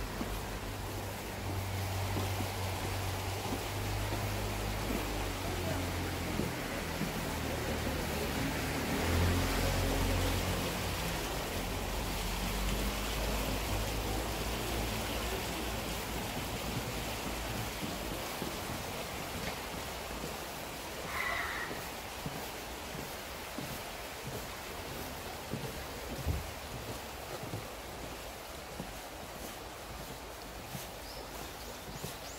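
Town street ambience heard while walking: a steady background hiss with a vehicle's low rumble that grows to its loudest about nine seconds in and fades away by the middle. A brief high chirp comes about twenty seconds in.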